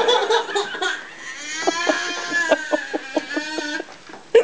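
A toddler's high-pitched squealing and giggling, breaking into a quick run of short pulses over the last couple of seconds.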